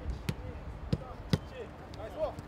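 A football being kicked between players on grass: four sharp thuds of boots striking the ball, about half a second apart, the third the loudest. Faint calls from players come in between.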